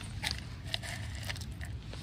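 A few light, sharp clicks and crunches over a steady low rumble.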